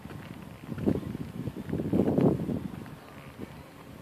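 Irregular rumbling noise on the phone's microphone, swelling about a second in and again, longer and louder, around two seconds in before dying away.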